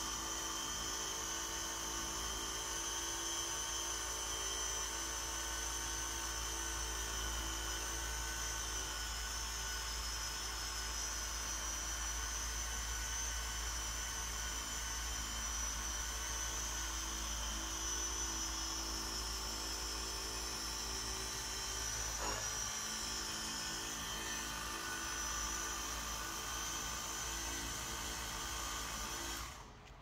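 Carbon Collective Nano compact orbital polisher with a microfiber pad running steadily with a high whine as it works cutting compound into a car's painted door jamb to take out old overspray. It stops just before the end.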